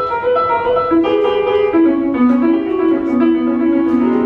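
Piano intro music from the show's soundtrack: a melody of short, bright notes over lower held notes, played as a lead-in to the song.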